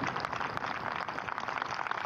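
Golf gallery applauding: many hands clapping at once in a steady, dense clatter.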